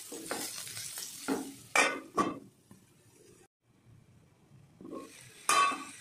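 Spatula scraping and stirring green beans in a nonstick kadai as they stir-fry, over a light sizzle. A few quick strokes come in the first two seconds, then a quiet stretch, then a sharp stroke again near the end.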